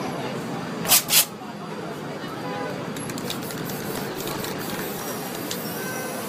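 Two short hisses of an aerosol spray-paint can about a second in, a quarter of a second apart, over steady street noise with voices.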